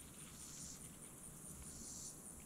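Faint, high-pitched insect chirping that repeats evenly several times a second, over otherwise near-silent outdoor quiet.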